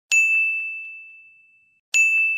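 A single bright bell-like ding sound effect, struck once and ringing on one high note that fades away over about a second and a half. An identical second ding strikes right at the end.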